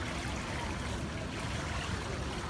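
Steady wash of swimming-pool water moving and trickling close by, with no single splash standing out.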